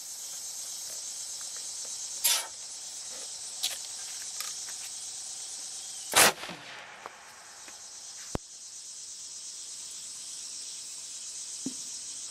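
Insects calling steadily in a high buzz, with one loud bang about six seconds in as the PVC potato cannon fires the Pringles can into the air. A smaller sharp sound comes about two seconds in.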